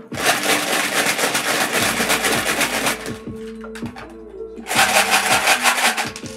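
Small wooden rune tiles rattled hard inside a clear plastic box, in two bouts of shaking: one lasting about three seconds, then a second starting near the end as they are cast. Soft background music with held tones plays underneath.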